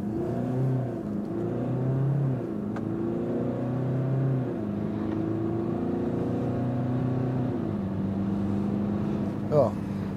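A Jeep Cherokee's 2.2-litre Multijet four-cylinder turbodiesel accelerating at full throttle, heard inside the cabin. The engine note climbs steadily and drops back at each upshift of the 9-speed automatic, three times.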